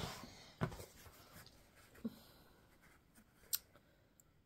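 Faint handling of thick cross-stitch fabric: soft rustling as the stitched piece is held up and moved, with a few small ticks, about half a second, two seconds and three and a half seconds in.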